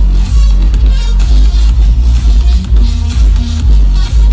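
Electronic dance music played loud over a festival stage sound system, with a heavy bass and a steady beat, heard from within the crowd.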